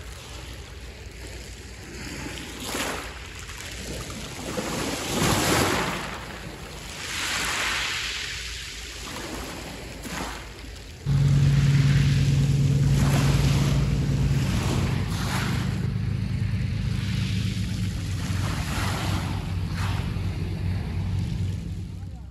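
Small waves washing over a pebble shore, swelling and falling every two to three seconds. About halfway through, a boat's motor cuts in suddenly, a steady, louder drone that runs on unchanged.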